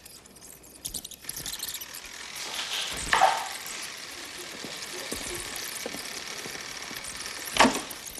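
Reel-to-reel tape deck being worked by hand: a steady whirring hiss of tape spooling, with a sharp clunk of the transport buttons about three seconds in and another near the end.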